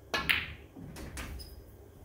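Snooker shot on the black: a sharp click as the cue strikes the cue ball and the cue ball hits the black, played with stun-screw. About a second later come a couple of softer knocks as the black drops into the pocket.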